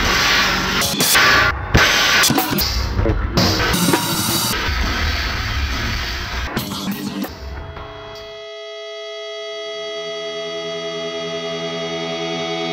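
Heavy metal band playing loud drums and guitars, which stops abruptly about eight seconds in and gives way to a steady held chord of sustained tones that slowly grows louder.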